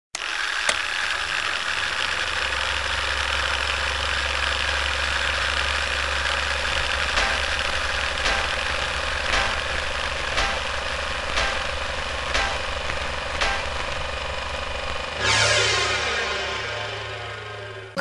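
Film projector running: a steady mechanical whir with a low hum, joined from about seven seconds in by sharp ticks about once a second as a countdown leader runs. Near the end a ringing tone swells up and fades away.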